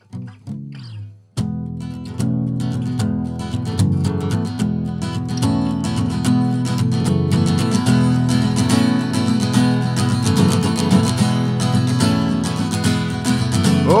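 Acoustic guitar strummed in a steady rhythm as a song's intro, starting with a sharp first strum about a second and a half in. A man's singing voice comes in at the very end.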